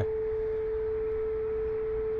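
A steady whine at one unchanging pitch, held without a break, over a faint low rumble.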